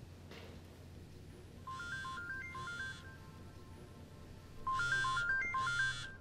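Smartphone ringtone for an incoming call: a short melody of stepping notes played twice, the second time louder.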